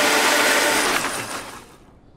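Countertop blender running while blending a green smoothie, then winding down about a second in and stopping near the end.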